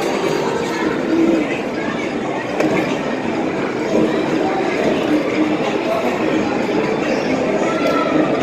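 Busy arcade ambience: a steady, loud hubbub of many voices mixed with the noise of the game machines.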